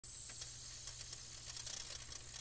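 Television static: a steady hiss with a few faint crackles, the sound of an analogue TV tuned to no station.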